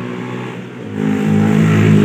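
A vehicle engine running, growing louder about a second in as it is revved.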